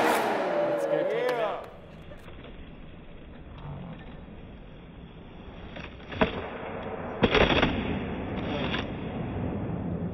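Eight-wheeled skateboard rolling on a smooth concrete floor, with a sharp clack about six seconds in and louder clatters of the board hitting the concrete around seven and a half and eight and a half seconds.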